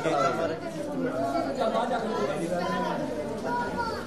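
Several people talking at once, with overlapping voices in a crowd of chatter.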